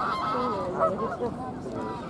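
Geese honking on a lake, several overlapping calls, busiest in the first half and fading toward the end.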